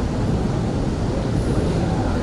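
Steady low rumble and hiss of amplified hall ambience in a pause between phrases of a sung Quran recitation, with no voice or pitched sound.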